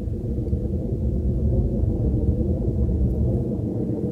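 Steady low rumble from an animated film's sound-effect track, standing for blood flowing through a vessel, with no clear beat.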